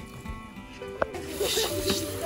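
A click about a second in, then water hissing from a garden hose spray gun as it sprays into a metal pot.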